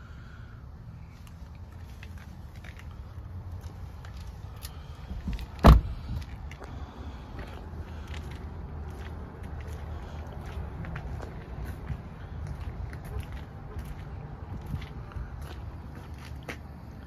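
A pickup truck's rear cab door shut with one loud thump about six seconds in, followed by scattered footsteps and handling noise over a low rumble.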